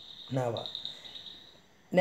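A cricket trilling faintly and steadily at a high pitch, with one short vocal sound from a man about half a second in.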